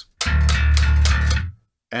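Electric bass guitar playing a single low D, plucked about a fifth of a second in and let ring for just over a second before it is muted. It is the D fretted on the low B string, played for comparison with the E string detuned to an open D.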